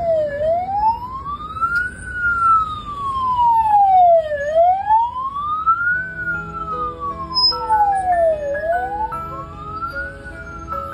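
Wailing siren on a motorcade vehicle, its pitch sweeping slowly up and down about once every four seconds. Music notes come in faintly under it in the second half.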